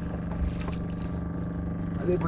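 A fishing boat's engine running steadily: a constant, even drone with no change in pitch.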